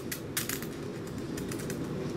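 Ballpoint pen writing on a paper form lying on a counter: a few short scratchy strokes, the clearest about half a second in, over faint room noise.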